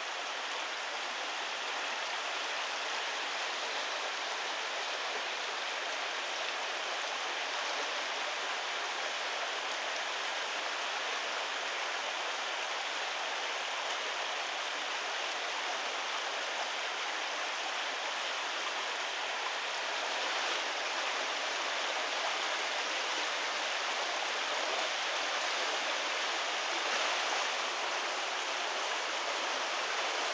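Shallow creek water running steadily over rocks in a riffle, growing a little louder about two-thirds of the way through.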